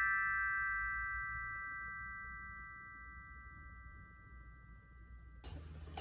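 A chord of tuned metal chime bars ringing out after being struck, several clear tones sounding together and slowly fading, then cut off suddenly near the end.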